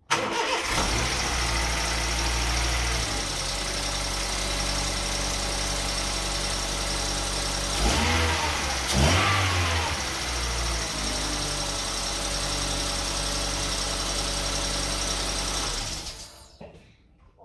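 Honda Fit's 1.4 four-cylinder petrol engine starting, running at a raised idle for about three seconds, then settling to a steady idle, with two short revs around eight and nine seconds in. It is running with newly fitted ignition coil boots.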